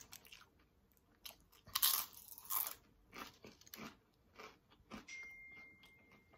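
Close-miked chewing of crispy homemade Cajun potato chips: a run of short, sharp crunches, loudest about two seconds in.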